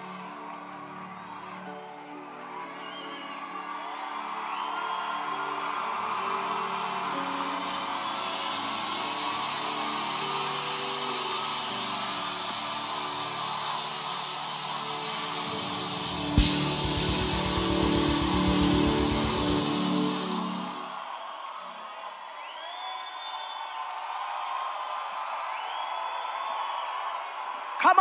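Congregation shouting and whooping in praise over a church band's sustained keyboard chords. The crowd noise swells through the middle, and a cymbal crash and a drum roll come about two-thirds of the way through. The sound then drops back to the chords and scattered shouts.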